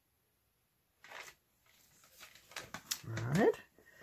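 Freezer paper crinkling and rustling as it is lifted off wet acrylic paint after a swipe, starting about a second in with a run of small crackles and clicks.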